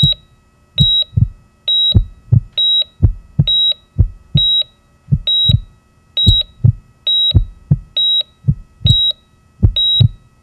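Song intro: a high electronic beep, about a third of a second long, repeats slightly faster than once a second, like a heart monitor. Pairs of low thumps fall between the beeps like a heartbeat, with a faint steady tone underneath.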